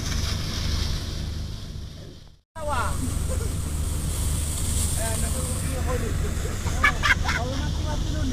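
Steady low drone of a boat's engine, with indistinct voices over it; the sound fades and cuts out completely for a moment about two and a half seconds in, then returns.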